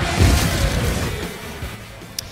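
A broadcast transition sound effect: a sudden low boom with a whoosh that fades away over about two seconds.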